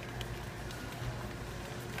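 Steady low hum of warehouse-store background noise, with a few faint clicks.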